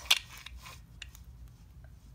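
Hands handling an electronic throttle body: one sharp click just after the start, then a few faint light ticks.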